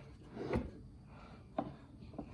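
Two light wooden knocks, about half a second in and again just past one and a half seconds, as a block of padauk is handled on a walnut board.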